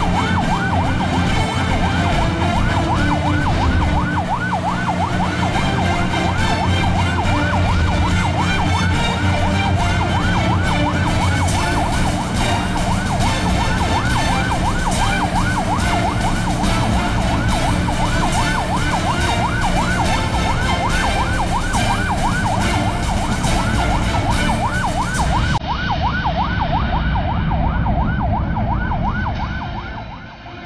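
Patrol-boat siren in a rapid yelp, its pitch rising and falling several times a second, over a steady low rumble. It fades near the end.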